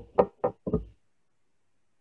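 Four quick knocks on a tabletop in the first second, about four a second, as fingertips press a matchstick down onto glued paper.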